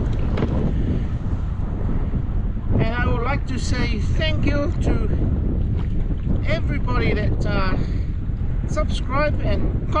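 Wind buffeting the microphone on open water, a steady low rumble, with a voice heard in short bursts from about three seconds in.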